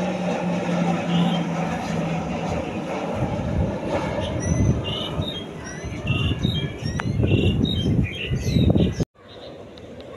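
Propeller drone of two Grob G 120TP turboprop trainers flying overhead: a steady hum that fades out about two and a half seconds in. Gusty low rumbling and short high chirps follow, and the sound cuts off abruptly about nine seconds in.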